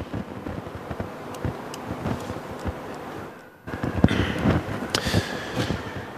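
Lecture-hall room noise with scattered small clicks and knocks as the presenter handles things at the lectern. A little past halfway the background drops out briefly, then returns slightly louder.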